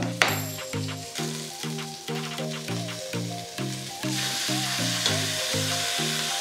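Background music, a melody of short notes, runs throughout. About four seconds in, chicken pieces searing in hot vegetable oil in a steel pot start a steady sizzle under the music.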